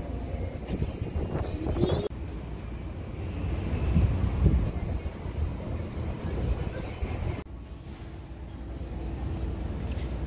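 Street ambience: a steady low rumble of traffic and wind on the microphone, with brief voices of passers-by about a second or two in. The background changes abruptly twice, as at edits.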